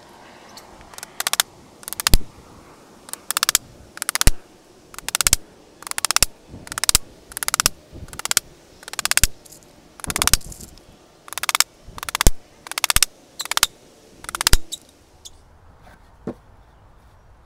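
Hammer driving nails into an old weathered wooden board, a steady run of about sixteen sharp blows, roughly one a second. The blows stop about a second and a half before the end.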